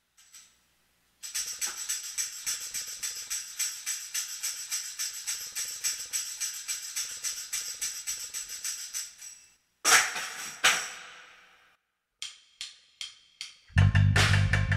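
Hand-shaken jingle bells in a quick, steady rhythm, then two louder shakes that ring out. A few sharp separate clicks follow, and a drum kit starts in at the very end.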